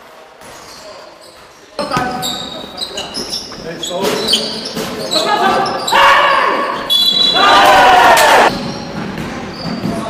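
Basketball bouncing on a gym floor, mixed with players' shouts echoing in a large hall. It starts suddenly about two seconds in and is loudest from about six to eight and a half seconds.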